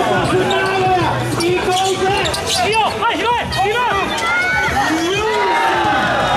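Basketball dribbling on a court with sneakers squeaking as players move, including a quick run of short squeaks around the middle.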